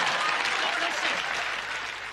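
Sitcom studio audience applauding and laughing, the noise dying away steadily.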